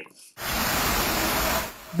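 Fire hose jet spraying water onto a burning building: a steady rushing hiss that starts abruptly about half a second in and falls away near the end.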